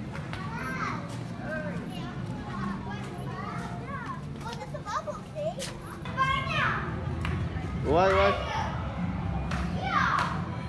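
Young children playing: high-pitched chatter, calls and excited shrieks, with the loudest cry about eight seconds in.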